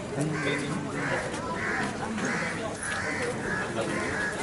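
A crow cawing over and over, a little under two caws a second, over low background voices.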